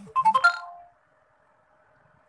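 A short electronic chime of four or five quick pitched notes, over in under a second.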